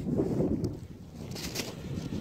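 Wind buffeting the microphone, a steady low rumble, with a few short hissy bursts in the second half.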